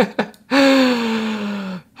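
A man's voice: a short chuckle trailing off, then one long drawn-out breathy vocal sound, sliding slightly down in pitch and stopping just before the end.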